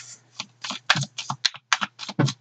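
Tarot cards being handled and flicked out of the deck: a quick, irregular run of about nine short, sharp clicks and snaps.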